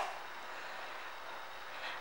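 Faint steady background hiss, with no engine or other distinct event.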